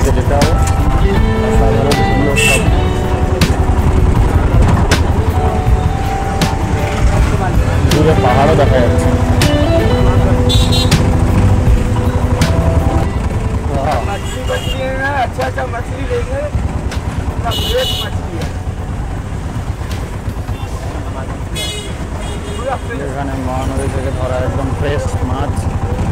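Road traffic and a steady low rumble of wind while riding across a river bridge, with short high-pitched vehicle horn toots four times.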